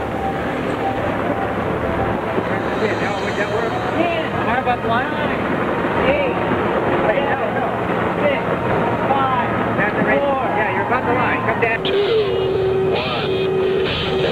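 Boat engine running steadily under wind and water noise, with several voices calling out indistinctly over it.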